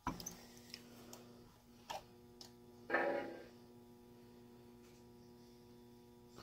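A click as track power is switched on to a Lionel sound car, followed by a steady electrical hum with a few light clicks and one brief louder noise about three seconds in.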